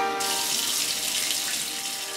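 Running shower water, a steady hiss, with sustained electronic music chords underneath.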